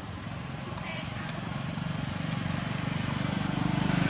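A motor vehicle's engine running, a low pulsing sound that grows steadily louder as it approaches.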